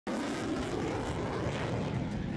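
Twin-engine fighter jet flying past with its engines on afterburner: a steady, rushing jet roar that starts abruptly.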